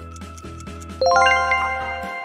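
Quiz background music with a steady beat; about a second in, a loud bright chime of quickly rising bell-like notes rings out and lingers. It is the correct-answer reveal sound marking the statement as true.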